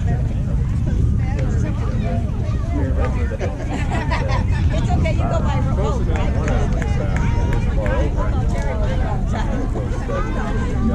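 Overlapping voices of several people chattering and calling out at once, over a steady low rumble.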